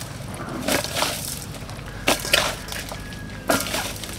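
Salted spring onions being squeezed and wrung by hand in a stainless steel bowl to press out their juice: wet squeezing sounds in several short bursts.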